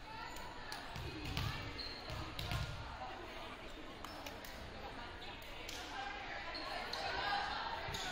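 A ball thumping on a hardwood gym floor a few times, most clearly about one and two and a half seconds in, over indistinct voices of players and spectators in the gym.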